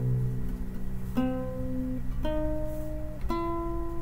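Classical guitar played solo at a slow pace: four plucked notes or chords about a second apart, each left to ring, over a sustained bass note struck at the start.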